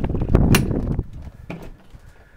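Travel trailer entry door being opened and someone stepping up inside: rumbling handling noise, a sharp click about half a second in, and a softer knock about a second later.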